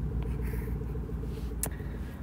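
A steady low background rumble and hum, with a few faint soft scratches and one sharp click about one and a half seconds in.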